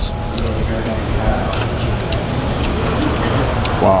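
Steady low rumbling background noise, with faint voices underneath.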